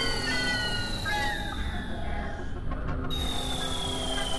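Experimental electronic drone music: synthesizer tones gliding slowly downward in pitch over a steady low rumble, with a new high falling tone starting about three seconds in.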